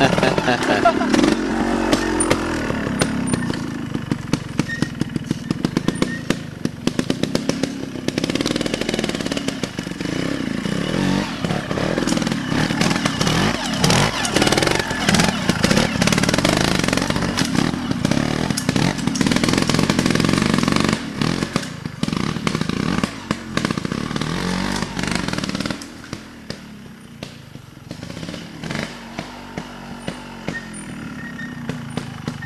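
Scorpa trials motorcycle engine revving up and down in short blips as the bike is ridden over rocks. It gets quieter about 26 seconds in.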